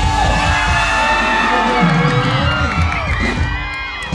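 Live pop band music played over a stage PA, with voices on microphones and whoops and cheers from the crowd.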